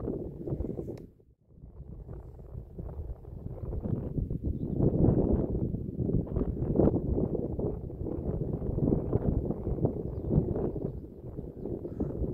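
Wind buffeting the microphone: a gusty, uneven rumble that drops away briefly about a second in.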